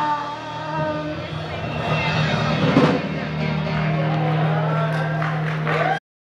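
Rock band of electric guitars, bass, keyboards and drums holding out the closing chord of a song, with voices calling out over it and one loud hit just before halfway.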